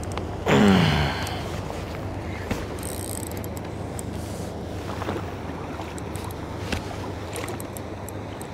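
Water lapping against a kayak hull under steady wind noise on the microphone, with a short voice sound falling in pitch about half a second in.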